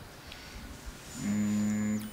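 A short pause, then about a second in a man's voice holds one low, steady hum, a drawn-out 'hmm', for under a second.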